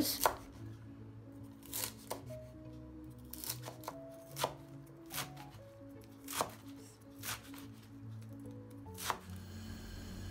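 Chef's knife chopping beet greens and stems on a wooden cutting board: separate, unevenly spaced strikes of the blade on the board, about one a second.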